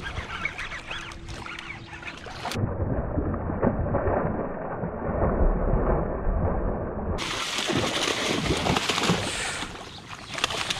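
A hooked muskie thrashing and splashing at the water's surface, the splashing growing louder and heavier from about a quarter of the way in.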